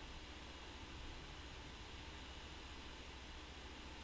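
Faint room tone: a steady hiss with a low hum underneath, with no distinct sound.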